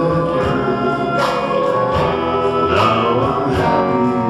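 Live gospel song: a male lead singer with backing vocals over a band of drum kit, electric guitar and keyboard.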